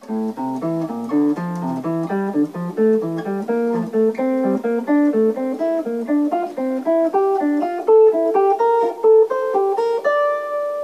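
Hollow-body electric guitar picking single-note diatonic triad arpeggios up the F major scale, a steady, even run of notes climbing in pitch.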